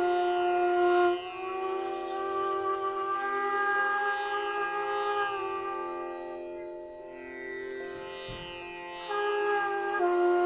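Hotchiku, a rough end-blown bamboo shakuhachi, playing long held notes with slight bends in pitch. A strong note gives way to softer ones about a second in, and a louder note returns near the end.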